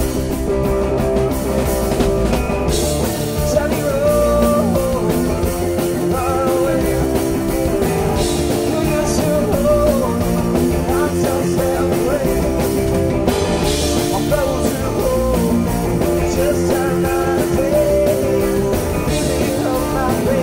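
Live rock band playing loud and continuously: electric guitars with bending lead lines over bass and drums.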